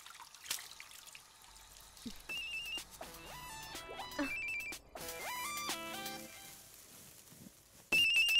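Mobile phone ringing with a melodic electronic ringtone: a tune of short, quickly stepping notes that repeats. It starts quietly about two seconds in and jumps loud at the very end.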